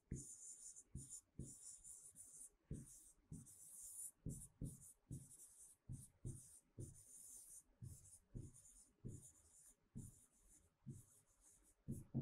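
Faint pen strokes writing on a board: short scratches and light taps of the tip in an uneven rhythm, about one or two a second.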